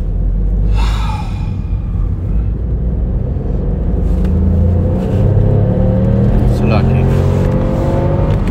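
Car engine and road rumble, the engine note climbing steadily as the car accelerates from about halfway through.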